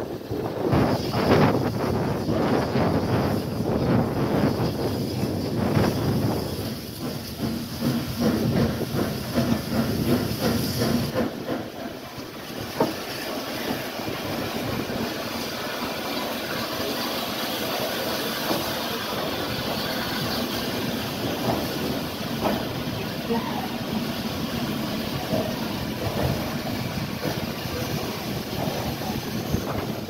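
A train standing at a station platform: loud, rough running noise with a hiss and a steady hum. It drops suddenly about eleven seconds in, leaving a quieter, steady hiss.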